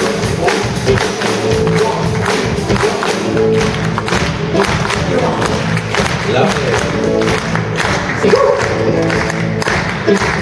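Live progressive rock band playing on stage: drum kit keeping a steady beat under electric guitar and bass.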